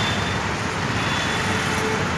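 Steady road traffic noise: the continuous sound of passing vehicles on a street.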